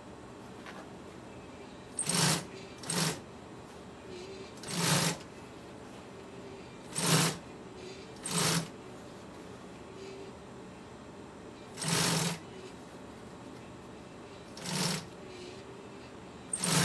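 Consew industrial sewing machine stitching black vinyl in seven short runs, each about half a second long, with pauses of one to three seconds between them.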